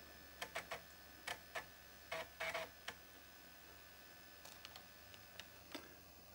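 Laptop floppy drive clicking and seeking, with a few short buzzes, as DOS Setup reads the installation diskette. The sounds are faint and irregular, mostly in the first three seconds, with a few fainter clicks near the end.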